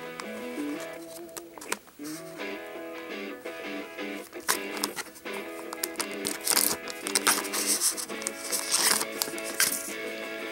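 Background music, with the crinkling and tearing of a foil sticker pack being opened by hand, the crackling busiest in the second half.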